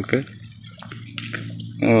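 A few light clicks and rustles from handling a tangle of thin black cables, under a steady low hum, with a man speaking briefly at the start and again near the end.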